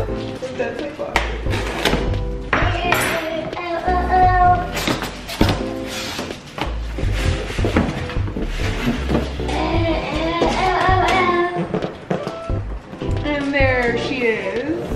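Background music: a song with a steady bass beat and a voice over it.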